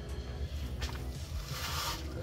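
Sandy soil poured from a plastic cup into a plastic tub of clay soil: a short rush of sliding, hissing grains near the end.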